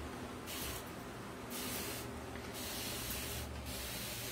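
Fine-mist spray bottle spraying water in several short hissing bursts, wetting a silkscreen stencil.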